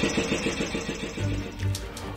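A short radio station jingle: music with a rumbling, engine-like undertone that fades down.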